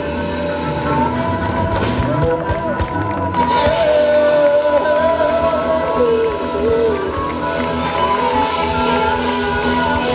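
Live blues band: two harmonicas played into microphones, with wavering, bending melody lines over electric guitar and drums.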